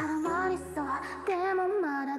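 Electronic dance-pop song with a high female voice singing held notes that slide up and down, over a sustained synth bass; the kick drum is out during this stretch.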